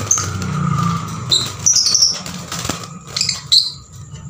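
Young lovebirds giving short, high squeaky calls while one is taken out of its wire cage by hand, with clicks and rattles from the cage. There is a cluster of squeaks about a second and a half in and more near the end.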